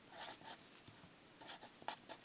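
Faint scratching of a pencil writing on paper, in a few short strokes, with a pause in the middle.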